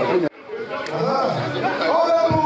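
Several people talking at once in overlapping chatter. The sound cuts out abruptly for a moment just after the start, then the voices resume.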